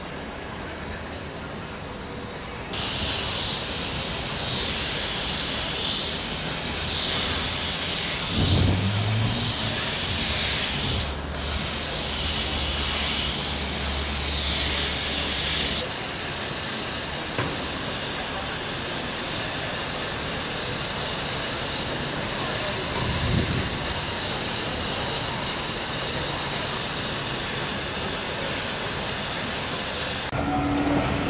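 Stanier Black Five 4-6-0 steam locomotive standing with steam hissing off it. The hiss starts suddenly about three seconds in, loud and wavering with a low hum beneath it, then drops to a steadier, quieter hiss about halfway through.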